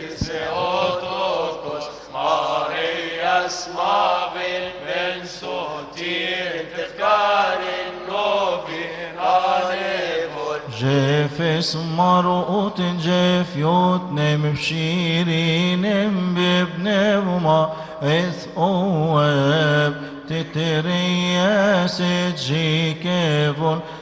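Male voices chanting a slow, drawn-out Coptic liturgical hymn together, each syllable stretched over wavering runs of notes. About eleven seconds in, fuller, deeper voices join and the chant grows louder.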